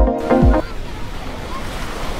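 Electronic background music with a steady kick-drum beat cuts off about half a second in. It gives way to the steady wash of ocean surf breaking on a sandy beach, with some wind.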